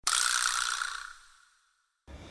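An editing sound effect for a title card: a sudden, high, noisy burst that fades out over about a second and a half.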